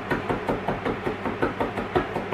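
Chef's knife chopping garlic finely on a wooden chopping board: quick, even strikes of the blade on the wood, roughly four to five a second.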